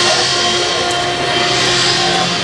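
Procession brass band playing a funeral march, holding sustained chords, with a rushing hiss that swells over the music and is loudest near the end.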